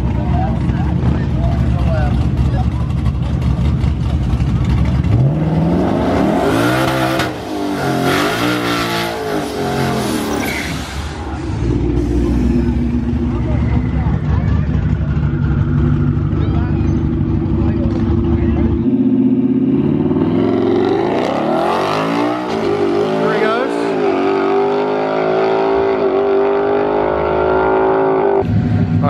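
Ford Mustang GT's 5.0 V8 idling, then revved up and down repeatedly and held at steady high revs while the rear tyres smoke in a burnout. From about 20 seconds in it launches and accelerates away, its revs rising again and again through the gears.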